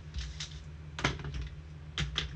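A handful of light plastic clicks and taps from gloved hands handling a hard plastic card holder, the sharpest about a second in, over a steady low electrical hum.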